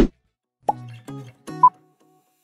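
A sharp pop sound effect right at the start, then after a short silence a light tune of short notes with a brief high blip near the end: the tick of the quiz's per-second countdown timer.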